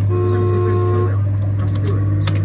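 Jolly Roger Stuart Little kiddie ride playing a held electronic chord from its speaker that stops about a second in, over a steady low hum.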